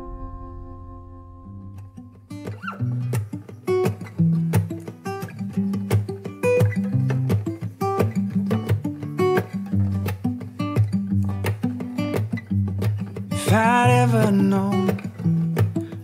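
A song's last held chord fades out, then an acoustic guitar starts a new song, picking single notes in a steady pattern. A singing voice comes in briefly near the end.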